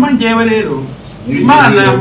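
A man's voice in two drawn-out phrases with a brief pause between them, repeating "we want to".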